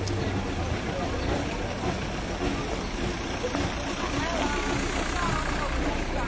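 Outdoor crowd of young people with scattered voices calling out in the second half, over a steady rumbling background noise.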